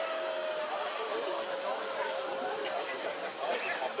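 Zephyr RC jet's 90 mm electric ducted fan whining as the model flies overhead, the high-pitched tone sliding slowly lower. Voices chatter in the background.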